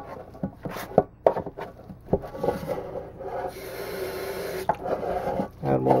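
Metal putty knife scraping and stirring powdered setting-type joint compound ("hot mud") with a little water in a metal pan. It starts as a few separate scrapes and clicks, then becomes steadier, continuous scraping from about halfway.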